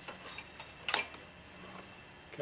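Steel rear axle clicking as it is worked through the caliper bracket and wheel hub by hand: a few faint ticks, then one sharp metallic click about a second in.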